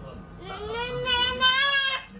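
A toddler's long sing-song vocal sound: one held vowel that starts about half a second in, rises slightly in pitch and grows louder, then stops suddenly.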